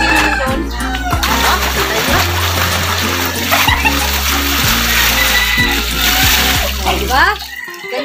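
Water poured in a heavy stream from a plastic jerry can, splashing over a person's head and into a shallow pool of water. The splashing starts suddenly about a second in and goes on until near the end. Background music with a steady bass runs underneath and stops just before the end.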